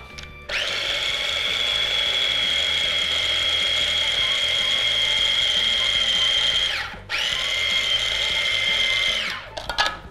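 Small single-speed electric food chopper running as rice and oats are ground into a dough: a steady high motor whine for about six seconds, a brief stop, then a second run of about two seconds that winds down.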